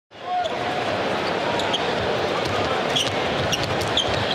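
Live basketball game sound: steady arena crowd noise with sneakers squeaking on the hardwood court several times and a basketball being dribbled. It fades in from silence at the start.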